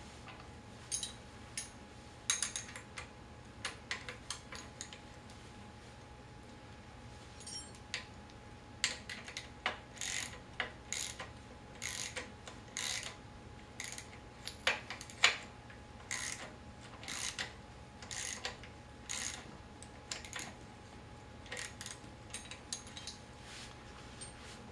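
Ratchet wrench clicking as the wheelchair's brake mounting bolt is tightened. It starts as a few scattered clicks, then becomes a steady run of sharp clicks about one or two a second through the second half.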